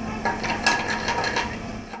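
Sauté pan being shaken and tossed on a gas range: the metal pan rattles and scrapes on the burner grate in a quick run of clicks, loudest a little under a second in.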